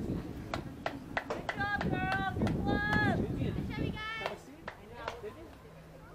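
Several drawn-out, high-pitched shouted calls from voices on a soccer field, each held on one pitch for about half a second, with a few sharp clicks between them.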